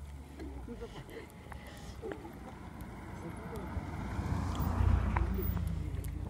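Wind rumbling on the microphone while cycling, with bicycle tyres rolling over a sandy track and faint voices. The rumble and a rushing noise grow louder about four to five seconds in.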